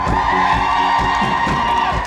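Live band music heard from the audience: a long high note held for nearly two seconds over a steady drumbeat, with the crowd cheering.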